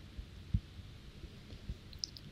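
A few faint, dull clicks from a computer mouse or trackpad as it is operated, the clearest about half a second in and another near the end, over quiet room tone.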